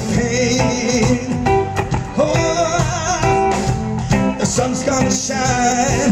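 Live band playing, with a hollow-body electric guitar carrying a bending, vibrato-laden melody over a steady drum beat.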